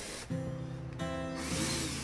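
Background music with plucked acoustic guitar notes, the chord changing about a second in.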